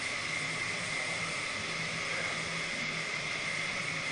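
Steady mechanical hiss with a constant high whine and a faint low hum, unchanging throughout.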